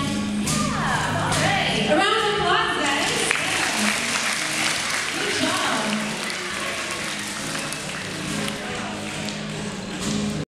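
A child scat-singing short gliding vocal lines into a microphone over a steady low note from the band, then, about three seconds in, a room full of schoolchildren applauding and cheering, the applause thinning out after a few seconds.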